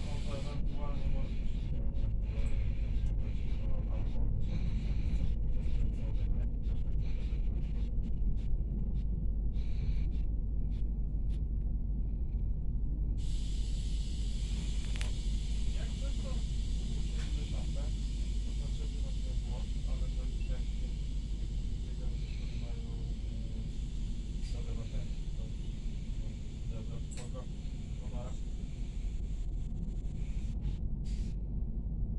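Steady low rumble of a Pesa SunDeck double-deck coach running on rails, heard from inside its lower deck. Irregular clicks come through in the first half, and a higher hiss sets in about halfway.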